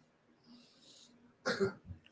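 A person gives one short cough about a second and a half in, after a faint hiss.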